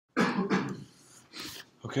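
A person coughing twice in quick succession, loudly, then a softer breathy sound about a second later.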